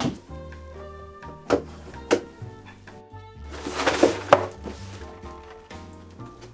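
Background music with steady sustained notes, over the handling of a large cardboard box: a few sharp knocks in the first two seconds, then a scraping rustle of cardboard about four seconds in that ends in a sharp knock as the box is turned over and set down.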